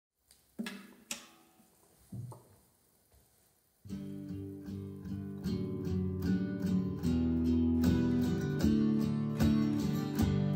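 Acoustic guitar: a few separate strummed notes, then from about four seconds in a steady strummed rhythm that grows louder.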